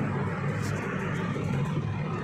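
Steady low background hum with a noisy haze, with no speech.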